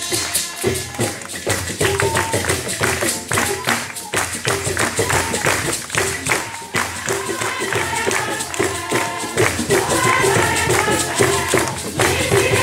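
A choir singing over fast, steady hand percussion, with the voices coming through more strongly in the last few seconds.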